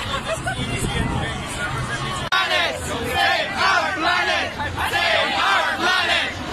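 A large crowd of protest marchers shouting and chanting together. It changes abruptly about two seconds in, and the voices are louder and more forceful after that.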